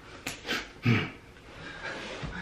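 A man huffing out short, breathy exhalations, three in about the first second, winded from straining into many layers of tight shirts.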